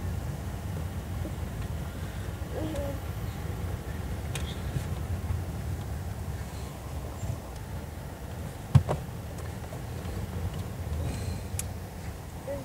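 Steady low rumble of a car's engine and tyres heard from inside the cabin of a moving car, with one sharp knock about nine seconds in.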